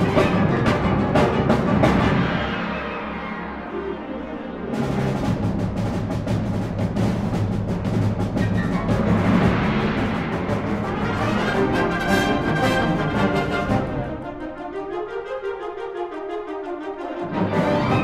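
Symphonic wind band playing a loud passage with clarinets, trumpets, trombones and timpani. Repeated accented strokes come near the start, the full band swells about five seconds in, and the texture thins with the bass dropping out before the full band and timpani come back in near the end.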